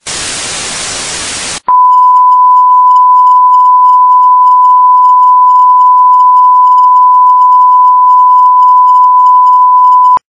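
Television static hiss for about a second and a half, then a much louder, steady, pure test-pattern tone, the reference beep that goes with colour bars, which cuts off just after the end.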